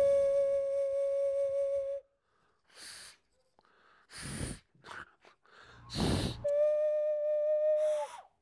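Plastic nose flute blown through the nose, holding one steady whistling note for about two seconds. Short breathy rushes of air follow, and near the end the same steady note sounds again.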